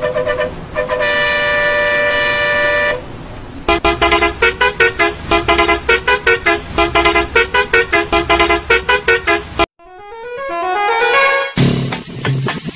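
A vehicle horn sounds as one steady, held two-tone blast lasting about two seconds. It is followed by fast, rhythmic electronic music with a steady beat, which cuts out briefly near the end and gives way to a rising sweep before the music returns.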